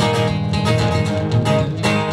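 Two acoustic guitars playing together, strummed and picked in a quick, busy rhythm.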